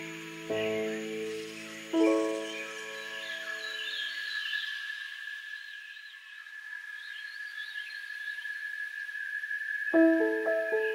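Soft piano chords, one struck about half a second in and another about two seconds in, left to ring out and fade. Under them a steady high insect buzz and light bird chirps go on. After about four seconds the piano falls silent, leaving only the buzz and chirps.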